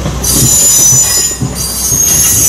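Steel wheels of passing passenger coaches squealing against the rails: a high screech that starts just after the beginning, breaks off briefly about one and a half seconds in and comes back, over the low rumble and clatter of the train rolling by.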